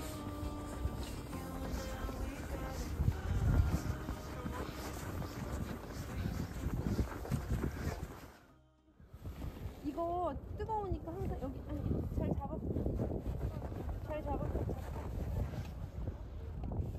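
Wind rumbling on the microphone, with faint voices of people playing on the snow. There is a short break about halfway through.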